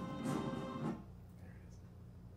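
Orchestral film music playing from a television: a held chord that fades out about a second in.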